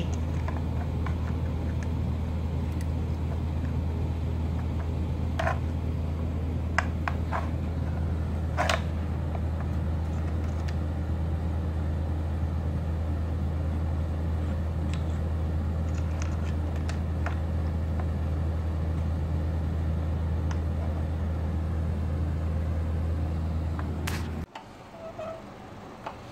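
Steady low hum with a handful of short, sharp clicks and knocks between about five and nine seconds in, with fainter ones later, as a cat paws at the sliding pieces of a puzzle feeder.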